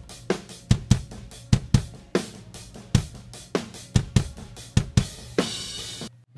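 Multitrack drum kit recording playing back: kick and snare hits in a steady groove with cymbals, and a cymbal wash near the end before the playback cuts off. The 1.74 ms delay that time-aligns the inside and outside kick mics is bypassed, so the two kick mics arrive slightly out of time with each other.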